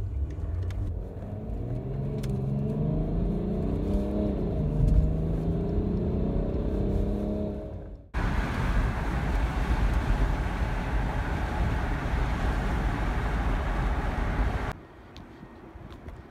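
Car engine accelerating, heard from inside the cabin: its note rises in pitch over several seconds. About eight seconds in it cuts abruptly to steady tyre and wind noise at speed, which gives way to much quieter outdoor ambience near the end.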